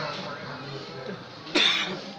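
A single sharp cough about one and a half seconds in, the loudest sound here, over faint voices.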